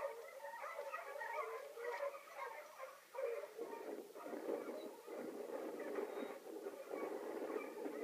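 Hunting hounds barking and baying at a cornered mountain lion, heard through a screen's speaker. Many short, wavering calls at first, then a denser, rougher din from about three and a half seconds in.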